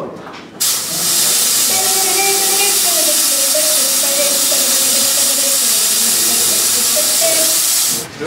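A jet of stage smoke or fog blasting out with a loud, steady hiss that starts suddenly about half a second in and stops near the end.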